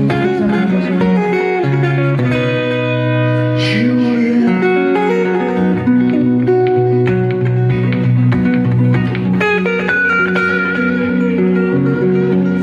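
Acoustic guitar played live in an instrumental passage of a song: picked melody notes over chords that ring on and change every second or two.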